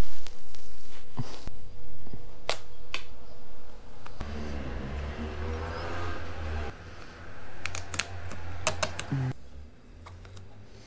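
Hands handling a large vinyl decal against a motorcycle's plastic front fairing: rustling of the sheet and scattered sharp clicks and taps, with a quick run of clicks near the end.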